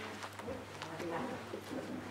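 A hardback Bible being closed and lifted from a lectern: light rustles and several soft taps, with faint low voice-like sounds and a steady low hum underneath.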